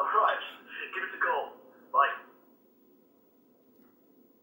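A man's voice speaking briefly, thin and cut off at top and bottom like a voice over a telephone line. It stops a little over two seconds in.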